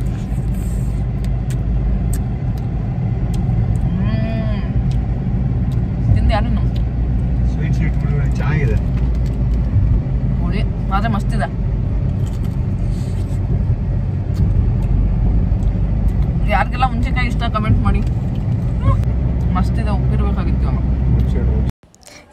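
Steady low rumble of a car driving, heard from inside the cabin, with a few brief snatches of voice over it. It cuts off abruptly just before the end.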